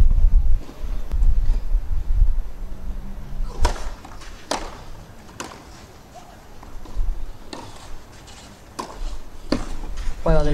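Sharp knocks of a tennis ball on a clay court: three about a second apart in the middle, then two more near the end, over a low murmur of spectators.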